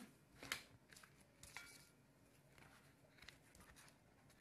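Near silence with faint kitchen handling noises from small glass bowls and the grated cheese being moved: a soft tap about half a second in, a brief light ring a little later, and a few small clicks.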